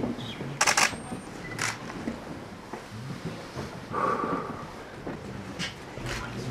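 Quiet room noise with a few sharp clicks, a cluster about half a second in and another near two seconds, then a brief faint mid-pitched sound about four seconds in.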